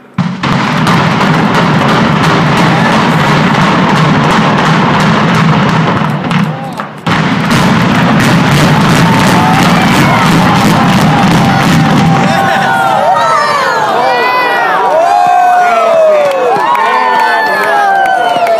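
Building implosion: demolition charges fire in a dense, rapid string of cracks that merge into one continuous rumble, with a short break about seven seconds in. From about nine seconds on, a crowd cheers and whoops, growing over the rumble.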